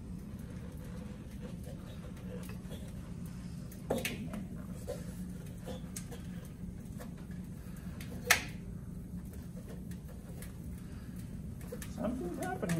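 Low steady room hum with scattered light clicks and knocks as a balloon is handled into liquid nitrogen. There is a sharp knock about four seconds in and a louder, sharper click about eight seconds in.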